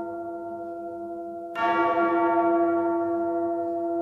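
A bell tolling: a ringing tone that slowly fades, struck again about one and a half seconds in.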